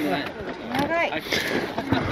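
Brief, untranscribed voices of hikers passing close by, with a short rising-pitched utterance about a second in.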